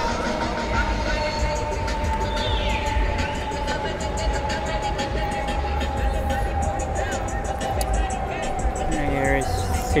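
Busy riverside ambience: background voices and music over a low rumble, with a steady tone that slowly falls in pitch throughout.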